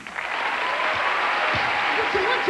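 Studio audience applause that swells in right at the start and then carries on at a steady level.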